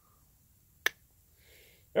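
A single sharp, very short click a little under a second in, in an otherwise quiet pause.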